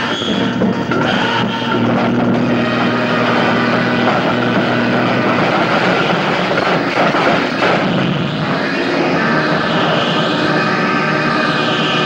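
A film soundtrack in which background music is layered over a dense, steady noise of a vehicle rolling and crashing down a rocky slope. The music's held tones come through more clearly in the last few seconds.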